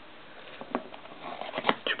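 Foil trading-card pack wrapper crinkling and the cards sliding out as the pack is picked up and opened. It starts as a few scattered clicks and rustles and grows busier about halfway through, with one sharper crackle near the end.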